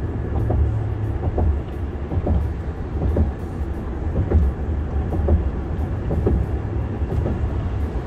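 Low, steady road rumble inside the cabin of a moving car, with a few faint ticks and knocks.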